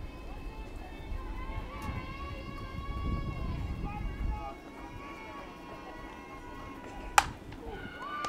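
Faint distant voices over a low rumble, then about seven seconds in a single sharp crack of a softball bat hitting the ball for a line drive.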